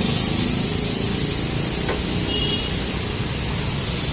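Steady rumble of road traffic and engines, with a thin high squeal for about a second and a half near the middle.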